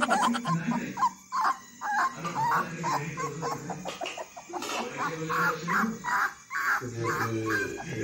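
Puppy whimpering in short, repeated whines, with background music underneath.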